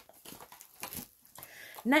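Small cardboard cosmetic boxes and packaging handled by hand: a light knock at the start, then soft scattered taps and rustles. A woman starts speaking near the end.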